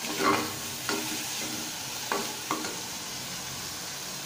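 Chopped bottle gourd frying in oil in a pressure cooker pan with a steady sizzle, while a metal ladle stirs it and scrapes against the pot about four times.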